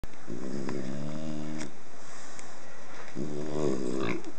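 Small dog lying on its back making two drawn-out, low, snore-like grumbles: a longer one just after the start and a shorter one near the end.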